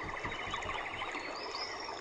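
Birds calling: a rapid, even trill in the first second, then high whistled calls that rise and fall.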